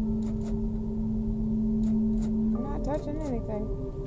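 A low, steady droning tone with fainter steady overtones, like an eerie ambient music pad, with several faint sharp clicks scattered through it that fit a car's power door lock actuator clicking on its own. Near the end a brief wavering tone slides up and down.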